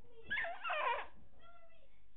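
A short, loud, wavering high-pitched vocal cry lasting under a second, starting about a third of a second in.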